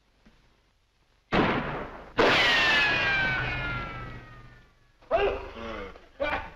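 Comic film sound effect of popovers exploding in an oven: a sudden blast about a second in, then a second, louder blast with a falling tone that fades away over about three seconds. A voice cries out near the end.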